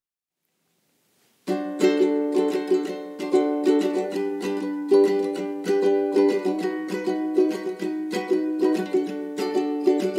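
Acoustic ukulele strumming chords in a steady rhythm as a song's instrumental intro, starting after a second and a half of silence.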